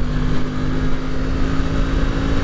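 Aprilia RS 660's 659 cc parallel-twin engine running at a steady pitch while riding through a bend, under heavy wind buffeting on the microphone.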